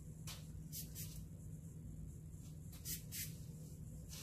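Faint, brief swishes of a paintbrush dabbing black chalk paint onto a wooden headboard, a few strokes over a steady low hum.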